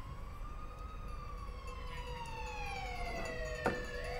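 Faint siren-like electronic swooping tone from a TV news channel's breaking-news sound bed: it rises slowly, then falls in pitch over about three seconds, over a steady low hum. A short click comes near the end as a new upward sweep begins.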